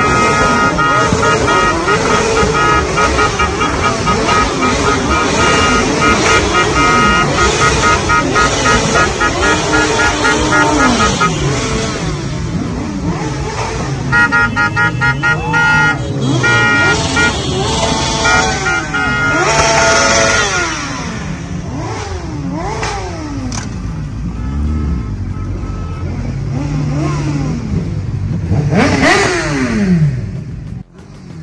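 Vehicle horns honking over motorcycle engines revving up and down. The horns are held long and loudest in the first ten seconds, and come back in shorter blasts later.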